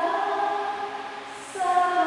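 A church choir singing a hymn with held notes. After a short lull, a new phrase starts about one and a half seconds in.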